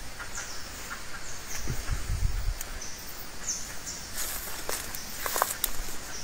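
Jungle undergrowth ambience: short high chirps from birds come and go, with leafy rustles and a few sharp twig-like snaps about five seconds in, and a brief low rumble about two seconds in.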